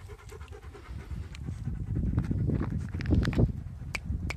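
A dog panting, with scattered short clicks and scuffs.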